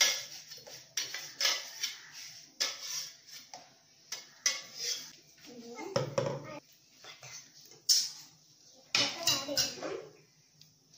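Metal spoon and ladle clinking and scraping against a steel blender jar and pan as the last of the purée is scraped out: a string of sharp clinks and scrapes, some close together.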